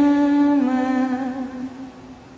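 A woman's voice singing unaccompanied, holding one long note that steps down slightly in pitch about half a second in and fades toward the end.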